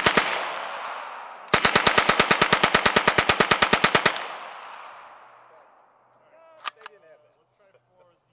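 German MP18 9mm submachine gun firing full-auto: the last two shots of a burst right at the start, then a single long burst of about two and a half seconds at roughly ten shots a second. The report echoes and dies away after the burst, and two faint clicks come near the end.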